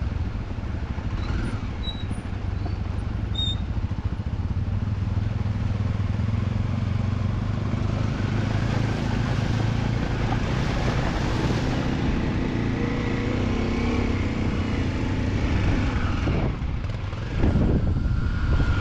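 Dual-sport motorcycle engine running steadily while riding a gravel track, with a rushing hiss of water around the wheels as the bike fords a shallow stream about halfway through. The engine pitch rises a little after the crossing, and the sound changes abruptly just before the end.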